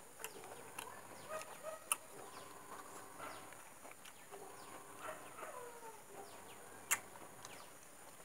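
Close sounds of ripe jackfruit bulbs being pulled from the fibrous core by hand and chewed, with two sharp clicks, one about two seconds in and a louder one near the end. Chickens cluck in the background.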